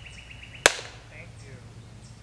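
A single sharp clap with a short ringing tail, about two-thirds of a second in. A fast, high, evenly ticking trill in the background stops right at the clap.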